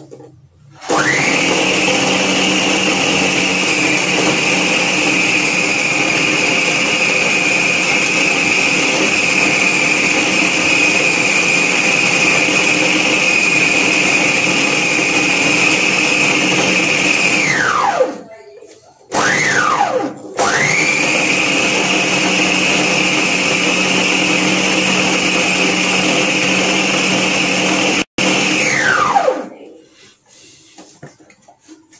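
Electric countertop food processor mincing raw chicken mixture, its motor running at speed with a steady high whine. About a second in it starts, after about seventeen seconds it winds down with a falling pitch, then it gives a short pulse. It runs steadily again and winds down with a falling pitch near the end.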